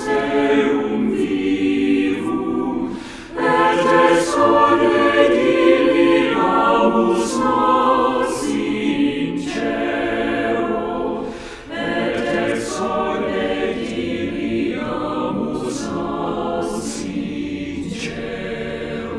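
Church choir singing in sustained phrases, with short breaks between phrases about three seconds and eleven and a half seconds in.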